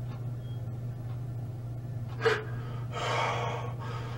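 A man crying: a sharp sniffing gasp about two seconds in, then a long noisy breath out lasting about a second.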